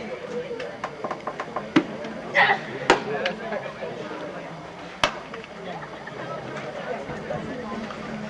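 A pitched softball smacks into the catcher's mitt about three seconds in, with a second sharp knock about two seconds later and a few lighter clicks before. Spectators talk throughout, with a short shout just before the catch.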